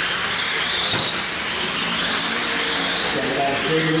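Several radio-controlled sprint cars racing on a dirt oval, their motors whining high, the pitch rising and falling as the cars speed up and slow for the turns.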